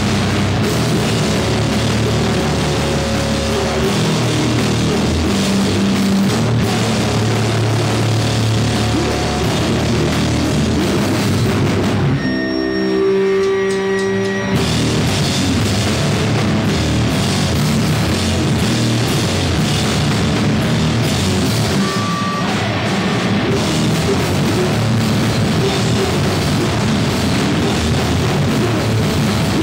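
Live rock band playing loud with electric guitars and drum kit. About twelve seconds in, the drums drop out for roughly two seconds, leaving only sustained notes ringing, then the full band comes back in.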